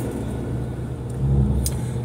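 Steady low rumble inside a car cabin from the vehicle running, swelling briefly past the middle, with one faint click soon after.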